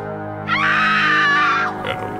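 A high-pitched human scream held for about a second, starting about half a second in, over a steady horror-trailer music bed of sustained tones.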